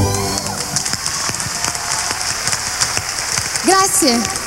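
The band's last sustained chord dies away in the first half second, leaving audience applause, a dense patter of clapping. A voice calls out briefly near the end.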